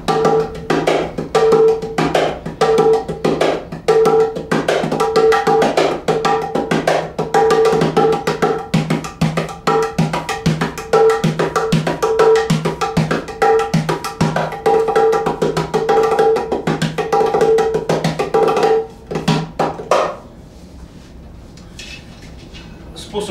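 Hands on Drums Cajudoo, a cajon–udu hybrid drum, played with bare hands while held upright between the knees like a conga or small djembe: a steady rhythmic pattern of ringing tones mixed with deeper bass strokes. The playing stops near the end.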